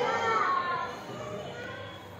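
High-pitched voices calling out over about the first second, then falling away to a low background murmur.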